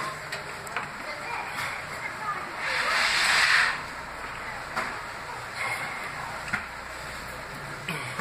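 A man breathing hard against the burn of a raw Carolina Reaper chilli, with one long hissing breath blown out about three seconds in.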